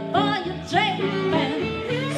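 Live acoustic blues instrumental: a harmonica plays short phrases of notes bent up and down, over strummed acoustic guitar and a lap-played slide guitar.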